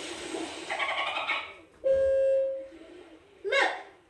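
Soundtrack of a played children's story recording: a brief voice, then one steady held tone lasting just under a second, then another short voice near the end.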